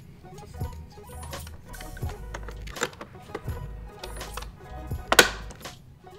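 Plastic main-brush cover of a Roborock S7 robot vacuum being pressed onto the underside and latched, a few light clicks and then one sharp snap about five seconds in as a latch catches. Quiet background music underneath.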